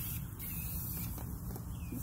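Faint rustling and tearing as a canna lily's root ball is pulled apart by hand, over a steady low hum.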